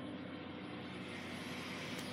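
Steady, faint background hum with no distinct events.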